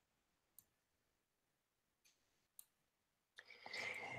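Near silence with a few faint, sharp clicks spread through the pause, and a faint rustle or breath near the end.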